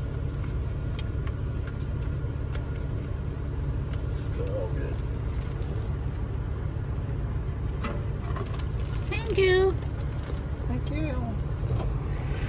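Toyota SUV's engine running at idle, heard from inside the cabin as a steady low rumble.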